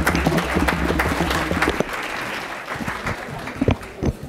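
Audience applauding, thinning out about halfway through.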